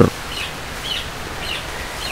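Steady background hiss of room noise, with a bird chirping faintly four times, about half a second apart.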